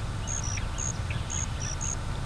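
Crickets chirping in short, high pulses, two pitches alternating a few times a second, over a low rumble of marsh ambience.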